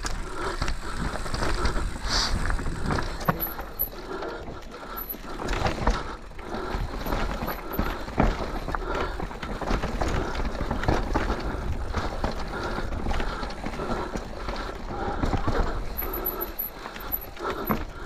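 Intense Tazer MX electric mountain bike riding down a rough dirt trail: tyres rolling over dirt, roots and rock, with the chain and frame rattling and frequent knocks over bumps, and a low wind rumble on the mic.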